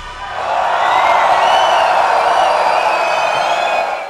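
Concert crowd cheering after a song ends, swelling about half a second in, with a few high wavering cries above the mass of voices.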